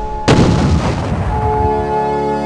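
An explosion: one sudden loud blast about a third of a second in, with a low rumble dying away over about a second and a half. Background music with held notes runs underneath.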